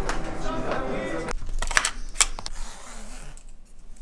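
A man laughing and talking for about the first second, then two or three sharp clicks.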